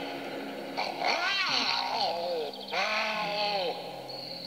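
A performer's voice giving two long mock lion roars, each rising then falling in pitch, over soft background music.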